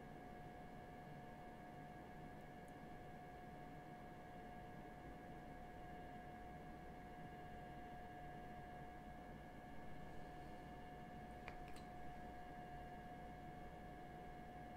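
Near silence: quiet room tone with a faint steady hum, and a few faint small clicks near the end.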